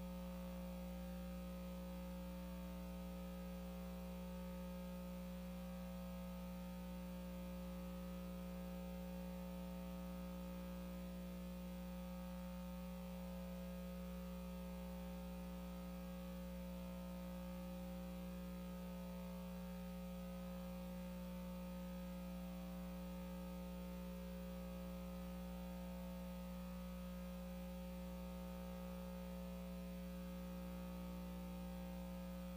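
Steady electrical mains hum, a low, unchanging buzz with nothing else over it.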